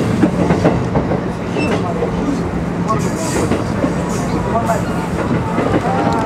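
E531-series electric commuter train running along the line, heard from inside the passenger car: a steady rumble of wheels on rail with some clickety-clack.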